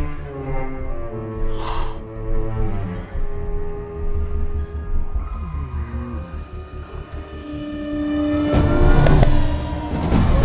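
Tense orchestral action score with held low chords and lines that fall in pitch, building to a loud, dense swell about eight and a half seconds in.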